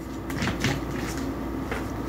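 Tarot cards being shuffled by hand: a few soft clicks and rustles of the deck, over a steady low hum.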